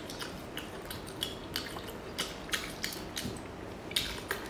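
Close-miked eating sounds: a string of short, sharp crunches and clicks, a few a second, from chewing and handling crispy fried food.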